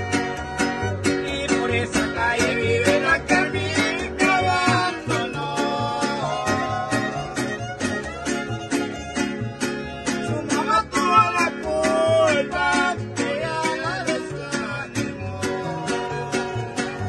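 Mariachi-style string conjunto playing live: two violins carry a wavering melody over strummed vihuela and guitar and a plucked guitarrón bass line, in a steady strummed rhythm.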